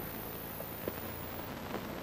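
Faint steady hiss of background noise with a thin, high-pitched whine running through it, and two tiny ticks about halfway through.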